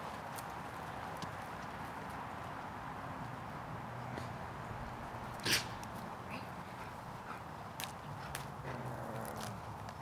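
Footsteps of a person and dogs moving briskly over a grass lawn, heard as soft scattered clicks and scuffs over a steady outdoor background. There is one short, sharper sound about five and a half seconds in.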